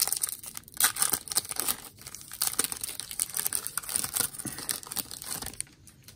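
Foil wrapper of a 2024 Bowman baseball card pack being torn open and crinkled by hand: an irregular run of crackles and rips that dies down near the end.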